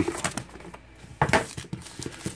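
Trading card packs and their cardboard box being handled by hand: crinkling of pack wrappers with a few short taps, the loudest about a second and a quarter in.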